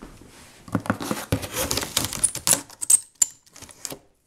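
A quick run of clicks, taps and scrapes of scissors and hands on a taped cardboard shipping box, with a few brief high squeaks in the middle.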